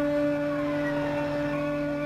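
A steady droning tone, with a fainter higher tone gliding slowly up and down above it.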